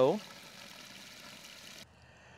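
Steady hiss of water from a garden watering wand pouring gently onto potting soil in a plastic tub; it cuts off suddenly near the end.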